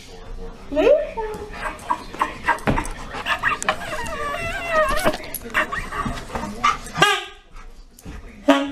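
Dog vocalising: a short rising yip about a second in, then a long wavering whine in the middle, among scattered knocks and scuffs.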